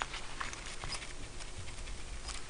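Faint rustling with a few light ticks: a nylon-microfiber clutch wallet full of cards being handled and turned upside down.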